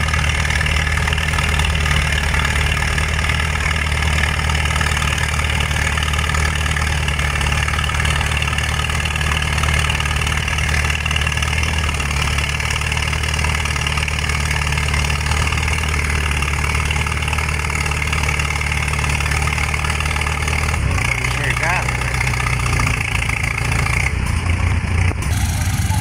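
Oliver Hart-Parr 18-27 tractor engine running hard and steady under load as it pulls a weight-transfer sled; its low note drops about five seconds before the end.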